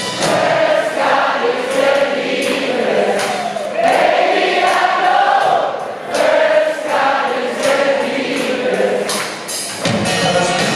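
Live concert music in which many voices sing a line together, choir-like, over sparse accompaniment with little bass.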